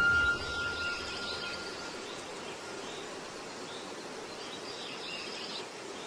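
Steady outdoor ambient noise from the match footage's own sound track, with faint distant chirps or calls. It opens with a sharp start and a thin steady tone that fades out over the first two seconds.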